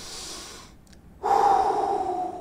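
A man breathing in, then a loud, breathy exhale through an open mouth starting a little over a second in, trailing off slowly.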